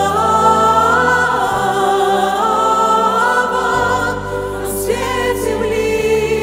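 Vocal group and choir singing a slow chorus in Russian in long held chords over a band accompaniment, with the bass note changing twice.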